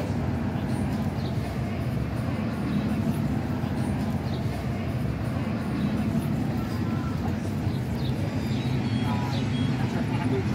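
Outdoor street-market ambience: indistinct voices of passers-by over a steady low rumble of traffic.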